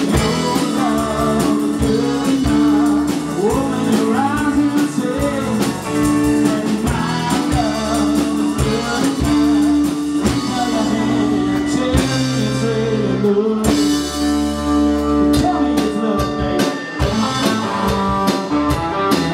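Live rock band playing: electric guitars, electric bass and drum kit, with a melodic line gliding up and down over sustained notes.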